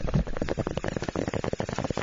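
A cut-in sound-effect clip of dense crackling noise, made of many rapid fine clicks.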